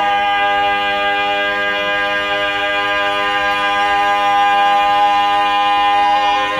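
Four-man barbershop quartet singing a cappella, holding the song's final chord. The chord changes right at the start and is then held steady and loud.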